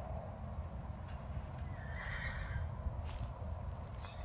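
A horse whinnies once, about two seconds in, while horses gallop in play. A few hoof knocks follow near the end, over a steady low rumble.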